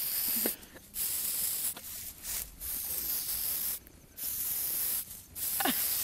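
Aerosol can of horse spray paint spraying onto a horse's coat: a hiss in a series of bursts about a second long, cut by short pauses.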